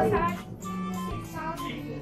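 Background music with a singing voice, held sung notes over an accompaniment.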